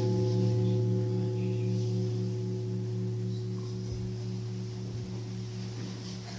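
A large, low-pitched struck bell ringing out and slowly fading, with a steady throbbing beat about three times a second. It is rung at the elevation of the chalice, right after the words of consecration at Mass.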